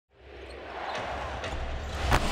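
A basketball dribbled on a hardwood arena court, two bounces about half a second apart, over a steady arena crowd murmur.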